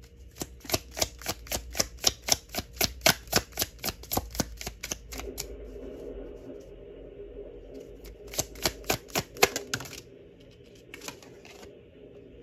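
A deck of cards being shuffled by hand: a quick, even run of card clicks, about four to five a second, for some four seconds, then a second, shorter run a few seconds later.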